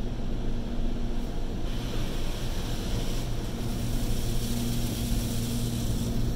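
Automatic car wash heard from inside the car: a steady low rumble and hum from the wash machinery, with water and foam brushes washing over the windshield and a hiss of spray that grows louder about two seconds in.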